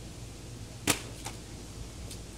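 A plastic water bottle hitting the asphalt driveway with one sharp clack about a second in, followed by a smaller bounce click.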